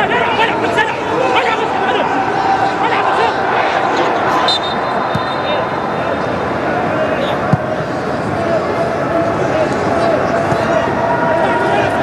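Football stadium crowd noise with voices over it, holding steady at a loud level. A brief high steady tone sounds about four and a half seconds in, lasting about a second and a half.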